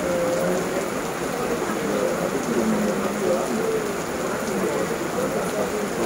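Heavy rain falling steadily on paving, lawn and trees, a dense, even hiss with no pauses.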